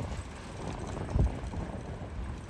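Low, uneven rumble of a canal tour boat motoring past close by, with one louder thump a little over a second in.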